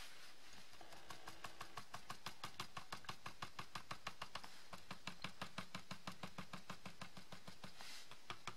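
Cotton swab dabbing rapidly on matte card stock: a long run of faint, even, soft taps, several a second, starting about half a second in.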